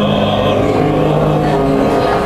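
A male tenor voice singing a Korean art song, holding long notes over piano accompaniment.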